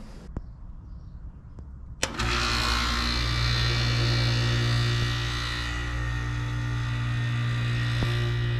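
Outdoor air conditioner condenser unit powered up after a contactor replacement: the new contactor clicks shut about two seconds in and a loud, steady electrical hum with a rushing hiss sets in and holds. In the owner's verdict, the unit still does not work after the third attempt.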